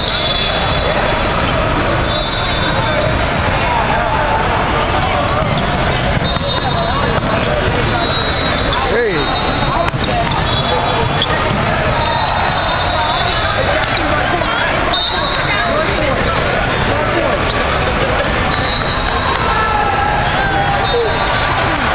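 Din of a large hall full of volleyball courts: steady chatter of voices and play, with short high whistle blasts from around the hall every few seconds, sneaker squeaks and the smack of hands on balls.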